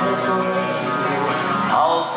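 Live rock band playing loud through a venue sound system, with guitars to the fore, heard from within the crowd.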